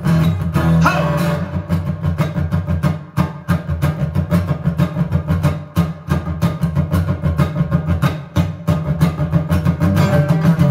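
Acoustic guitar strummed in a steady, quick rhythm: an instrumental break with no singing.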